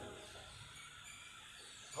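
Quiet room tone with a faint steady hiss, as the last word dies away at the start.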